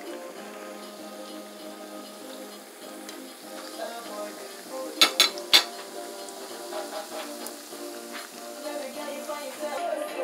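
Oil sizzling as squares of coconut cracker dough fry in a pan, under background music. About halfway through, three sharp knocks of a utensil against the pan are the loudest sounds.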